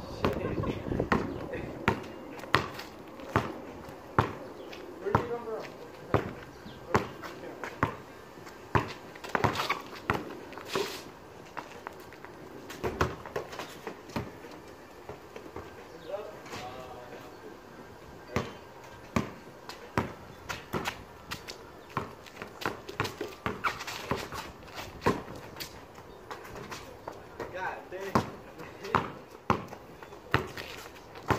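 Basketball dribbled on a concrete driveway: a run of sharp bounces, roughly one a second and at times faster, with brief voices in between.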